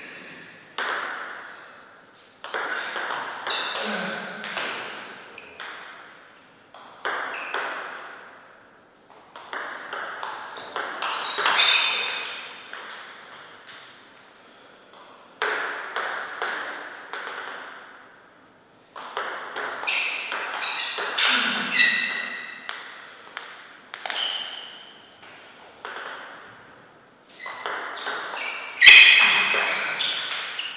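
Table tennis rallies: the ball clicking sharply off the players' bats and bouncing on the table in quick alternating strikes. The clicks come in bursts every few seconds, with short pauses between points.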